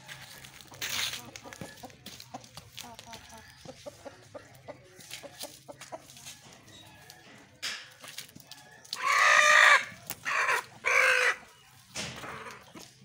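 A chicken calling loudly near the end: one long call, then two shorter ones. Before it there are faint scattered clicks and shuffles.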